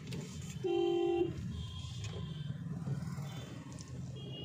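Steady low rumble of a moving car heard from inside the cabin, with a single half-second vehicle horn honk shortly after the start.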